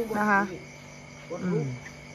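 Crickets chirping in a steady background chorus, with a short woman's phrase at the very start and a brief falling voice sound about one and a half seconds in.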